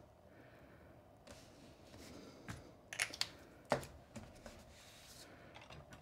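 Faint handling of a small folded cardstock pouch on a desk: a soft rustle of paper with a few light clicks and taps as it is held, released and set down.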